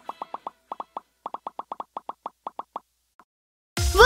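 A quick, uneven run of about twenty short, pitched cartoon pop sound effects that stops about three seconds in.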